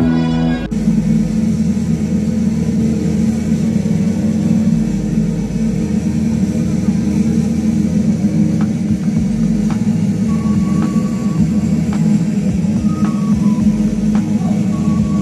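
Music played over a public-address system in a large gymnasium, heard as a loud, steady, muddy sound heavy in the low end with a few faint held notes on top. At the very start, a clean added music track cuts off just under a second in.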